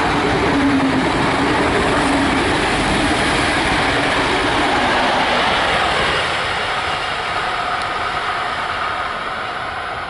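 XPT diesel passenger train rolling past at speed, its wheels and carriages making a loud, dense running noise with a faint clickety-clack. The noise eases off over the last few seconds as the train moves away.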